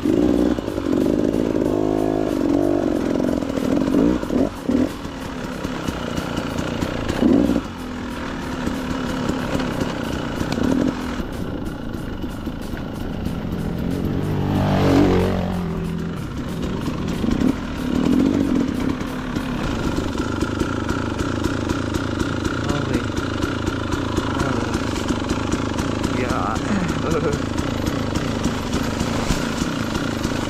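Dirt bike engine being ridden along a trail, its pitch rising and falling over and over as the throttle is opened and closed, with a sharp rev and drop about halfway through.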